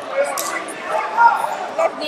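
Indistinct voices in a large hall, with short louder calls near the start and about a second in.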